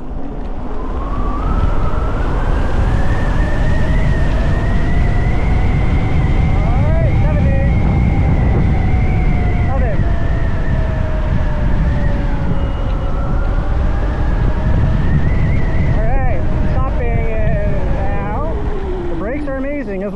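Spark Cycleworks Javelin 8 kW electric motorbike's motor whining as it accelerates, its pitch climbing over the first several seconds, holding, then sliding down near the end as the bike slows. Under it is a steady rush of wind on the microphone and tyre noise.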